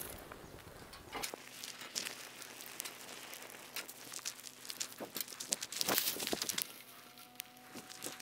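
Small fire of dry grass tinder and twigs crackling, with the rustle and snap of dry twigs and leaves being laid on as kindling: faint, irregular clicks and crackles, busiest around five to six seconds in.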